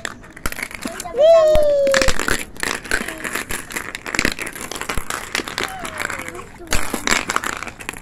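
Cloth rubbing and rustling right against a phone's microphone, with many irregular clicks and crackles. A child calls out a high "wee" about a second in.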